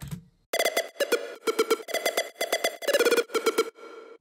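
Big room synthesizer lead playing a fast staccato riff: square-wave synth notes layered with a short bright noise click on each note, very bubbly with a lot of click. It starts about half a second in and stops just before the end.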